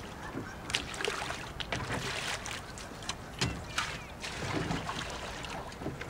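Water splashing and sloshing around a small rowboat, with a string of sharp knocks and clicks from things being handled in the boat.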